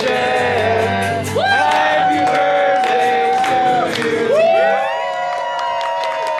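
A group of voices singing the drawn-out ending of a birthday song in long held notes, swooping up onto a new note about a second and a half in and again about four seconds in, with hand clapping throughout.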